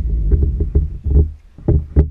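A quick, irregular run of dull low thumps and knocks. The last sharp knock lands near the end.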